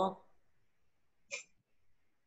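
A woman's voice finishing a spoken word, then quiet over a video call, broken by one brief sharp sound about a second and a half in.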